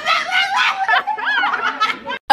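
Two girls laughing hard together, with high-pitched voices and a rising squeal of laughter about a second in.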